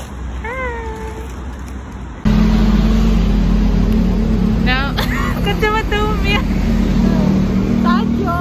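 Steady low rumble of road traffic that starts suddenly about two seconds in, with a woman's voice speaking briefly over it. Before the rumble, a single short high whine that rises and then falls.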